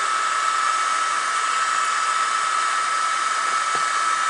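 Steady machine hiss with a constant high-pitched whine from the powered-up diode laser engraver setup, with a faint tick near the end.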